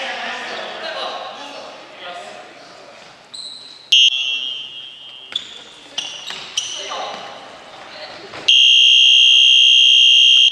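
Players' shouts and ball kicks echo in a large gym hall. About 8.5 seconds in, a loud, steady, high-pitched electronic buzzer sounds for about two seconds: the game timer signalling the end of play.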